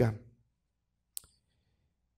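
The end of a spoken word, then quiet broken by a single short, sharp click about a second in.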